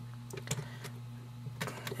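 A few scattered light plastic clicks and taps as fingers work at a dock's snap-in adapter insert, trying to pry it out of its slot, over a steady low hum.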